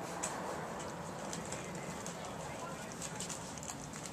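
Quiet outdoor background with faint rustling and scattered small clicks from a husky puppy moving about on the grass beside its rubber chew toy.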